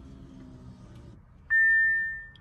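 A single electronic chime from the 2018 Audi S5's dashboard as the ignition comes on in accessory mode. It is one steady, high beep that starts suddenly about one and a half seconds in and fades away. Before it there is only a faint low hum.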